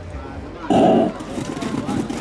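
A sudden, loud starting signal for a mass-start inline speed skating race, lasting about a third of a second, with voices in the background.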